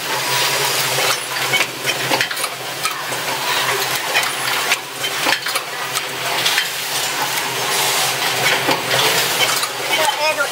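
Automatic micro switch assembly machine running: rapid, irregular metallic clicks and clatter from its assembly stations and index table, over a steady hum and hiss.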